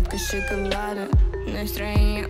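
A pop/hip-hop song plays with a heavy bass beat, and a house cat meows over it.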